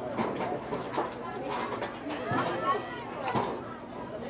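Indistinct, overlapping chatter of spectators' voices, with a sharp clap-like sound about three and a half seconds in.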